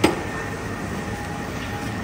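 Steady background noise of a café room, with a faint steady high whine, and a short click at the very start where the sound cuts in.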